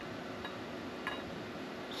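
Low steady room hum with two faint light clicks, about half a second and a second in, from hands handling a machined aluminum plate with a battery disconnect switch fitted.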